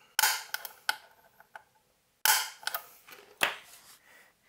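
Automatic center punch snapping against a metal chassis to mark hole centres: sharp clicks with a short ring, the loudest just after the start and about two seconds in, with a weaker click about three and a half seconds in and smaller knocks between.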